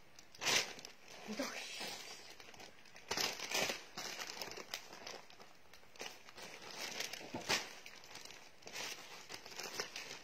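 Plastic garment bags crinkling and rustling in uneven bursts as they are handled on a table.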